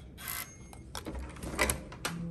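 Hotel keycard door lock being opened: the card is held to the reader, a faint short electronic beep sounds, then several clicks of the lock and door handle, loudest about one and a half seconds in.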